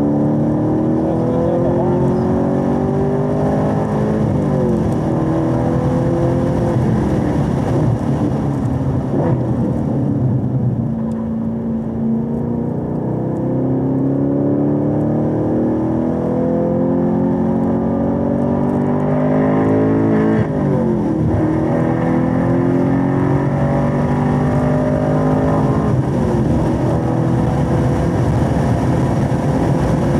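Chevrolet Camaro SS 1LE's 6.2-litre V8, heard from inside the car, with the revs rising and easing off repeatedly through the corners. In the last third it pulls hard with two quick upshifts, the pitch dropping sharply each time before climbing again.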